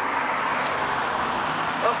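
Road traffic: a car driving past, a steady rush of tyre and engine noise, with a low engine hum joining about halfway through.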